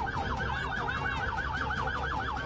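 Emergency vehicle's electronic siren in a fast yelp, its pitch rising and falling about seven or eight times a second, over a steady low rumble.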